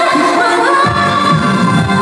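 Live pop concert music heard through a concert sound system: a female voice sings a held, gliding melody over a backing track. The bass and beat drop out at first and come back in just under a second in.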